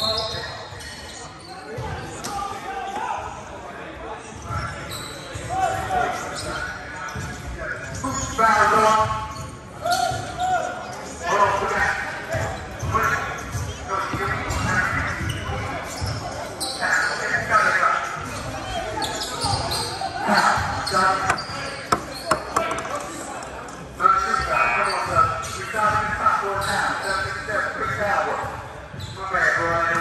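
Basketballs bouncing on a hardwood gym floor in a steady string of short knocks during a game, with players and spectators shouting and talking at intervals, in a large gym hall.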